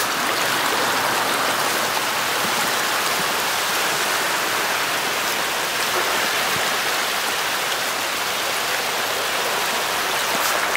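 Steady, dense splashing of a great mass of pond fish thrashing at the water surface in a feeding frenzy, a continuous rain-like churning of water.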